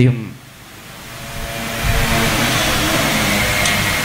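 A steady rushing noise that swells in over the first two seconds and then holds, with a faint low hum beneath it.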